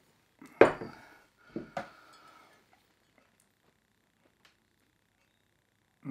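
Glass soda bottles clinking against each other as one is set down and another picked up: two sharp clinks, about half a second and just under two seconds in, followed by a few faint ticks of handling.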